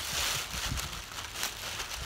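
Thin plastic bag rustling and crinkling irregularly as a child handles it.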